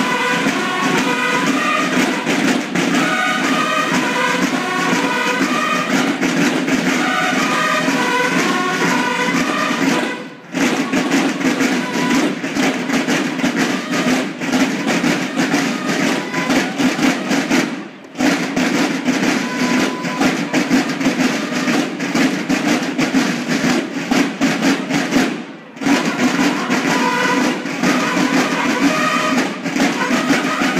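Banda de guerra, a drum and bugle corps of marching snare drums and bugles, playing a march: steady rapid drumming with bugle phrases over it, strongest in the first ten seconds and again near the end. The playing breaks off briefly three times, about ten, eighteen and twenty-six seconds in.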